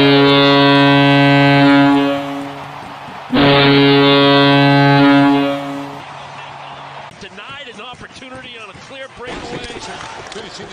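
Boston Bruins arena goal horn: two long, deep, loud blasts about a second apart, the low note lingering a little after the second. Crowd noise and voices follow.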